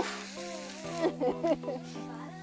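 A bone-in steak sizzling on a grill plate over steady background music, the sizzle fading within the first second; about a second in, a few short high-pitched voices cut in.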